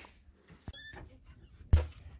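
A dog gives a short, high-pitched whine just under a second in, followed by a single sharp knock near the end.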